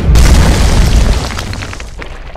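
Sound-effect boom of a wall smashing: a sudden deep crash that stays heavy for about a second, then fades under a spatter of crackling debris.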